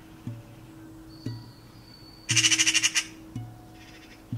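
A harsh, fast-pulsing bird squawk a little past two seconds in, lasting under a second and the loudest sound. Under it, a low musical note restarts about once a second. A thin high whistle holds for about a second just before the squawk.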